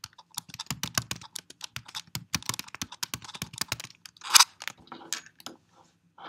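Typing on a computer keyboard: quick runs of key clicks, with one louder keystroke about four seconds in.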